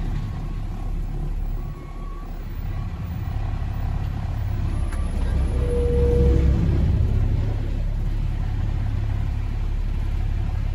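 Dump truck's diesel engine running, heard from inside the cab as a steady low rumble that grows louder about five to seven seconds in as the truck moves forward. A short squeal sounds near the loudest point.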